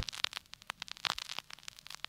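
Vinyl record surface noise: irregular crackles and pops from the stylus in the groove.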